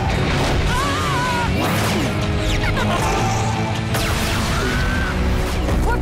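Action music under a cartoon battle, with crashing impacts and whooshes and a couple of short high gliding cries.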